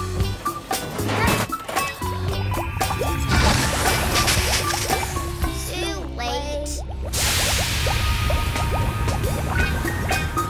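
Cartoon background music with playful sound effects, over two long hisses of a geyser venting gas from the ground, the second starting about seven seconds in after a short break.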